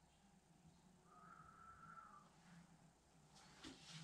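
Near silence: faint room tone with a low steady hum, and one faint brief tone about a second in.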